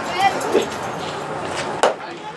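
Spectator voices chattering, then a single sharp pop near the end as the pitched baseball is struck or caught at the plate.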